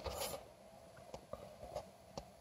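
Mostly quiet room tone with a few short, faint clicks in the second half.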